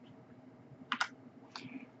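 Soft clicks of a computer keyboard, a quick pair about a second in and a fainter one near the end, over faint room noise.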